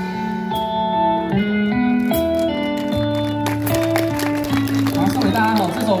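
Instrumental band music played through a PA: a melody of long held notes stepping from pitch to pitch over a low bass line, with light ticking percussion. Near the end a man starts to talk over the music.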